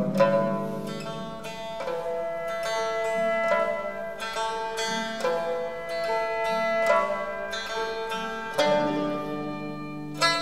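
Pipa (Chinese lute) playing a traditional Chinese melody, plucked notes with sharp attacks over long-held tones from a Chinese traditional orchestra accompanying it.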